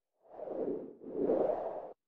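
Two whoosh sound effects of a logo intro animation, one right after the other, each swelling and fading. The second is louder and cuts off abruptly near the end.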